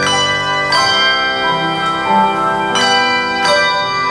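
Handbell choir ringing a piece: chords of bells struck together a few times, each left to ring on in long, clear tones that overlap the next.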